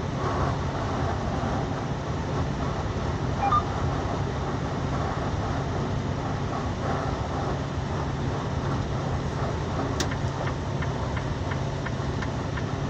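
Steady road and engine noise heard inside a moving vehicle's cabin, with one brief click near the end.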